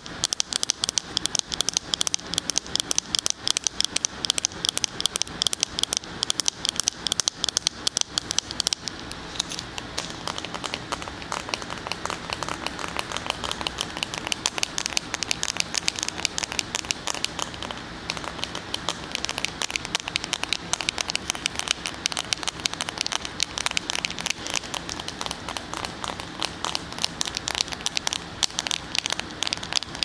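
Fingers and nails tapping rapidly on a cell phone in a hard case, held right at a binaural microphone: fast, dense clicking, sharp and loud for the first nine seconds or so, then softer and lower.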